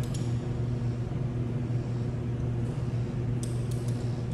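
A steady low mechanical hum with a few overtones, from a machine running in the background, with a few faint light clicks of rope hardware, carabiners and pulleys, being handled, mostly about three and a half seconds in.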